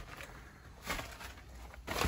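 Footsteps on the soft floor of a run-down mobile home: two faint dull thuds about a second apart.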